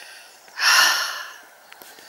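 A woman breathing hard after a steep uphill climb: a soft in-breath, then one loud exhale about half a second in that fades within a second.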